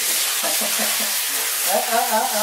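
Handheld shower head spraying water into a bathtub, a steady hiss.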